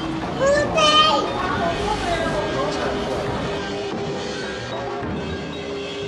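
A small child's high voice calls out briefly about a second in, over steady background music.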